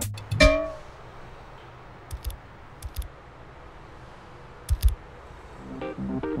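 The music breaks off, leaving a steady street background hiss. A short pitched note sounds half a second in. A few soft thuds with sharp clicks follow, around two, three and nearly five seconds in.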